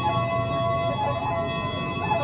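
Side-blown flute played live, its notes sliding and bending up and down in pitch, over a bed of steady held tones.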